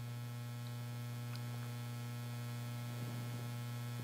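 Steady low electrical mains hum with a faint buzz of evenly spaced higher overtones, and a faint tick about three seconds in.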